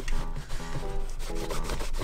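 A cloth rubbing back and forth over the leather upper of a brown cap-toe shoe, wiping off surface dirt with leather cleaner.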